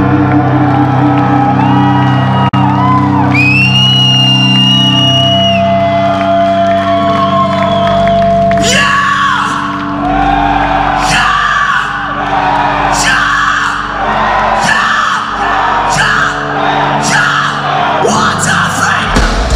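Thrash metal band live in a club hall: a held distorted guitar chord rings with a high wailing guitar line over it, then from about halfway, rhythmic shouts come in about every 0.8 seconds over the sustained chord.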